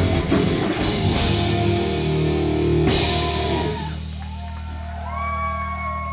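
Live classic rock band playing loud through amplifiers, recorded on a phone's microphone, with a crash about three seconds in. The full band then drops out, leaving a low chord held and ringing while pitched notes bend above it, as at the close of a song.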